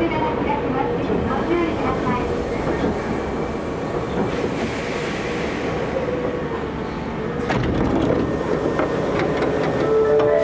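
Hankyu 7300-series train running slowly alongside an underground station platform as it pulls in, with continuous wheel and running noise and a single heavy knock about three-quarters of the way through.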